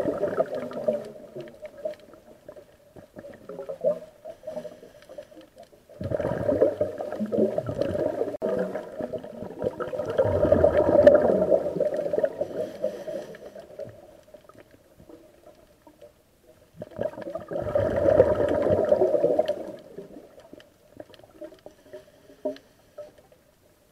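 Underwater recording of a diver's exhaled air bubbles gurgling in long bursts: one at the start, a long one from about six seconds in, and another near the end, with quieter gaps between breaths.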